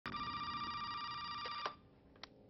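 Office desk telephone ringing in one unbroken ring. It cuts off with a click about one and a half seconds in as the handset is lifted off its base.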